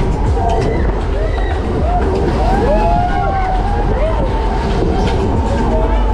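Funfair ride running with a steady low rumble, overlaid by people's voices calling out in short rising-and-falling shouts. A steady held tone joins in about halfway through.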